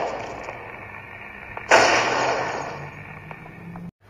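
A single loud bang from a film trailer's soundtrack, a little under two seconds in, with a long fading tail, over a low steady hum.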